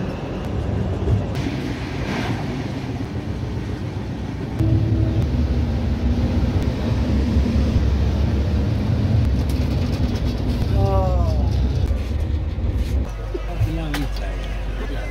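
Running noise of an Indian Railways AC double-decker coach at speed, heard from its open doorway and vestibule: a steady rumble of wheels on rail with wind. The rumble gets louder about four and a half seconds in and drops suddenly about a second before the end.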